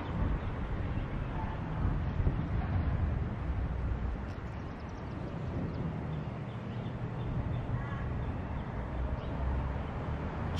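Wind gusting against the camera microphone: a low, uneven rumble that swells and eases.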